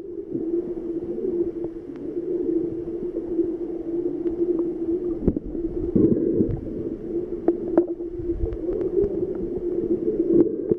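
Muffled sound of a camera held underwater: a steady low hum with scattered small clicks and knocks. Louder rushes of water come as the camera moves, the strongest about six seconds in.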